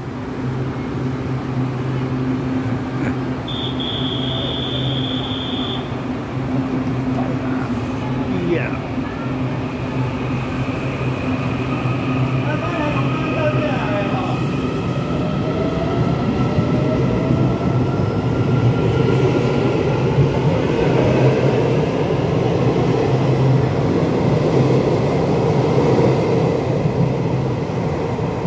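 Taiwan Railway EMU800-series electric commuter train pulling out of an underground station, its traction motors whining in rising tones as it gathers speed over a steady low hum and wheel rumble. A short high steady beep sounds about three and a half seconds in.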